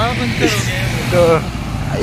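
A man talking and laughing over the steady low hum of an idling engine.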